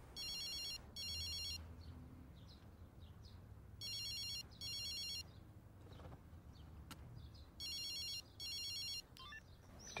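A cell phone ringing with an electronic trilling ring tone, sounding three double rings evenly spaced a few seconds apart before it is answered.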